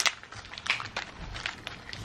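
Quiet handling noises of a gift package being opened: a sharp click at the start, then scattered light rustles and clicks, with a soft low bump a little past the middle.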